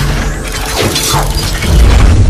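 Glass-shattering sound effect that starts suddenly, with a deep bass rumble underneath that swells louder near the end.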